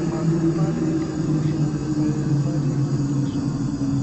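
Ambient drone music: two low held tones over a grainy, rumbling noise bed, slowly sinking in pitch.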